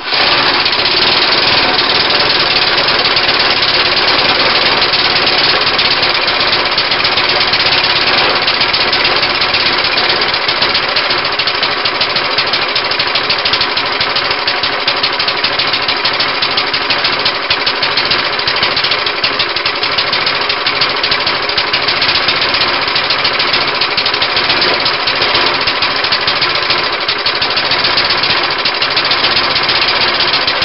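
Briggs & Stratton single-cylinder lawnmower engine, running on a homemade oak connecting rod, catches on the pull cord and then runs loud and steady at a fast, even beat. The owner says it was apparently running way too rich.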